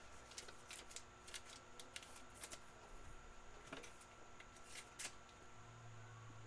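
Faint handling of trading cards: light rustling and scattered small ticks as cards are slid and flipped through a pack.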